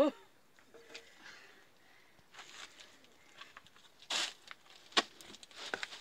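Quiet handling of bread dough and cloth as a loaf is placed onto a wooden bread peel: soft scuffs, a brief scraping swish about four seconds in, and a sharp tap about five seconds in.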